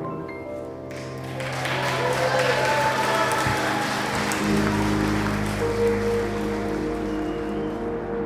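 A congregation applauding, starting about a second in, over slow background music that fills out around the middle.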